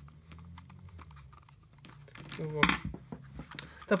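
A screwdriver drives the last screw into a plastic brush-cutter throttle handle: faint, light clicking of the screw and housing, then a single louder clack about two and a half seconds in, with a brief vocal sound.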